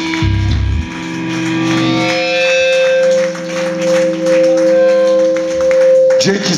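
Electric guitars of a live hardcore punk band holding a long, steady ringing note as a song ends. A short low thud comes about a quarter second in.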